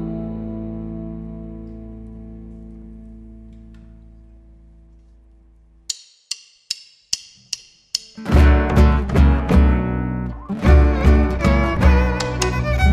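A folk band's final chord of electric bass and acoustic guitars rings and slowly fades out over about six seconds. Then six sharp, evenly spaced clicks, and a little after eight seconds the band starts the next piece together: acoustic guitars, electric bass, percussion and violin.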